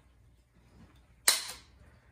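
Hand-held hole punch snapping shut through a cardboard paper towel tube, one sharp click a little past a second in.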